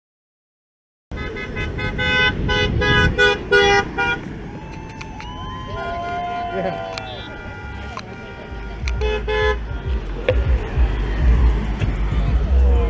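About a second in, a passing car's horn sounds a rapid series of short honks. Shouts and whoops follow, then two more short honks, with the low rumble of passing traffic toward the end.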